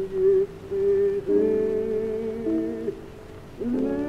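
A man singing softly in long held notes to piano accompaniment. There is a brief lull about three seconds in, then his voice slides upward into the next phrase.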